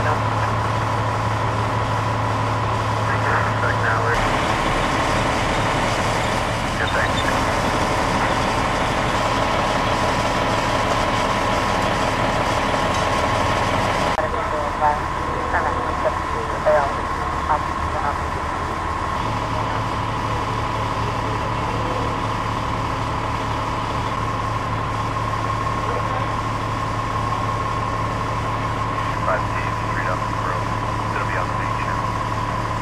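Steady hum of an idling vehicle engine, with indistinct voices in the background; the background changes abruptly a few times.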